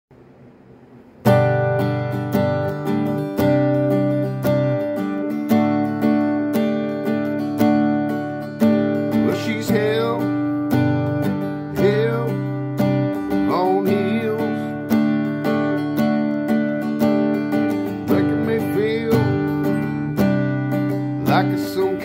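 Acoustic guitar strumming chords in a country song intro, starting suddenly about a second in and going on with an even strum.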